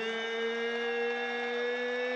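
Ring announcer calling out a boxer's name, holding the final vowel in one long call at a steady pitch.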